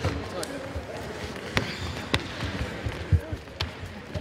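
Sparring fighters' feet stepping and stamping on a wooden sports-hall floor, with about four sharp impacts from clashes spread through the middle and later part.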